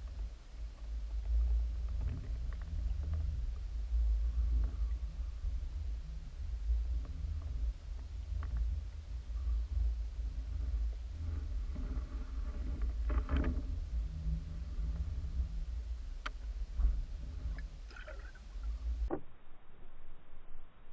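Low, uneven rumble of water moving around an underwater camera's housing, with a few faint clicks and knocks. The rumble cuts off suddenly about a second before the end.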